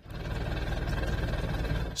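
Lobster boat's engine running steadily: a low, even drone with a faint high whine over it.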